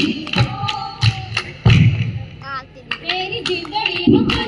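Giddha performers' sounds: women's voices singing and calling over sharp hand claps and thuds, the heaviest a low thud a little under two seconds in. It is busy and uneven, dropping quieter for a moment around three seconds in.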